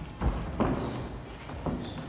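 A boxer's feet stepping and pivoting on the ring canvas during a footwork drill, with a few short thuds.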